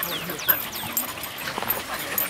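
American Eskimo dog panting after running, with several short, high chirps falling in pitch in the first second.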